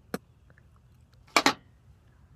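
A light click, then two sharp spits in quick succession about a second and a half in, a chewer spitting out a gritty coffee-flavoured chew.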